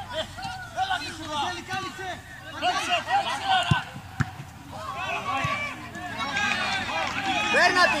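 Several men shouting across an open football pitch as the players attack the goal. About halfway through come two short thuds, fitting the ball being struck in the goalmouth.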